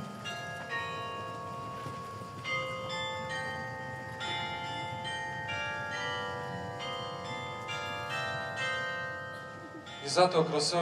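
Church bells ringing: a steady series of strikes at various pitches, about one a second, each note ringing on beneath the next.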